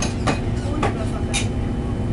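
Steady low hum of a parked Airbus A330 airliner's cabin air system, with several short sharp clicks and knocks over it.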